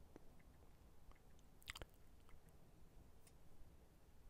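Near silence: room tone with a few faint, short clicks, one near the start and two close together just under two seconds in.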